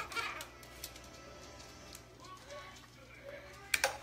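Faint background voices and music, with a sharp click near the end.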